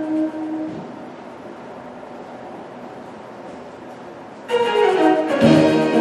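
A held tone stops less than a second in, leaving a quiet room. About four and a half seconds in, orchestral music with strings starts suddenly and loudly.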